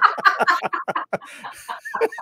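Several adults, two men and a woman, laughing together in short, choppy bursts.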